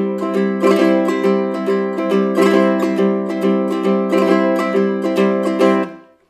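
Low-G ukulele played with banjo fingerpicks, strumming chords in a steady rhythm decorated with drag ornaments: two quick upstroke notes leading into a thumb downstroke on the beat. The playing stops abruptly near the end.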